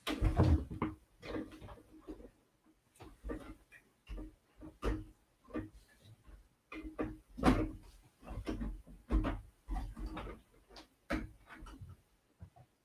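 LEGO bricks and plastic parts bags being handled: a run of irregular clicks, knocks and rustles as pieces are sorted and fitted.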